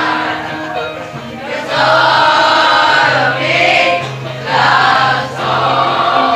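A class of schoolchildren singing together as a choir, in long held phrases with short breaks between them.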